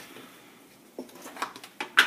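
Kitchen handling noises: a few faint taps and clicks, then one sharp click at the very end, as a seasoning container is picked up and opened over the pot.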